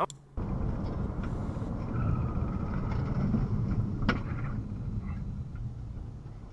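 Road noise of a car driving, heard from inside the vehicle on dashboard footage: a steady low rumble that starts suddenly just after the beginning, with one sharp click about four seconds in.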